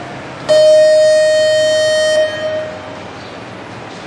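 Show-jumping arena start signal: one steady electronic horn tone, about a second and a half long, that fades out with an echo. It signals the rider to begin, starting the 45-second countdown to the first fence.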